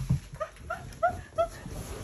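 Alaskan malamute whining: a string of about five short whimpers, each rising and falling in pitch.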